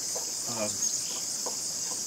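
Steady, high-pitched insect chorus that does not let up.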